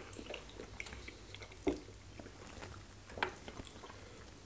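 Close-up eating sounds: chewing, small wet clicks and soft squishes as fufu and scent leaf soup are eaten by hand. Two louder clicks stand out, one under two seconds in and one about three seconds in, over a low steady hum.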